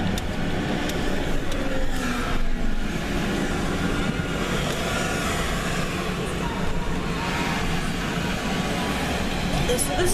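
Steady engine and road noise heard from inside a moving truck's cabin.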